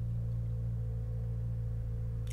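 A steady low electrical hum with a few fixed pitches, unchanging throughout.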